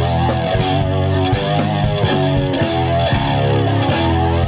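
Live rock band playing an instrumental passage without vocals: electric bass guitar and electric guitar over drums, with a cymbal or snare hit about twice a second.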